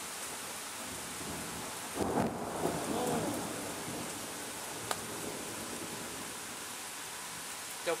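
Light rain falling steadily, with a roll of distant thunder about two seconds in that swells and fades over a second or two.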